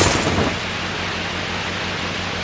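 Steady hissing static noise with a low hum beneath it: an old-film or static sound effect.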